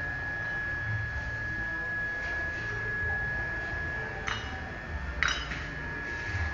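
Foundry workshop noise: a steady high-pitched whine held throughout over a low rumble, with a few sharp metallic clinks about four and five seconds in.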